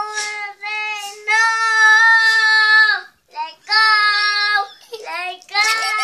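A young girl singing, holding high notes mostly on one pitch in short phrases with brief gaps between them; the longest note is held for about a second and a half.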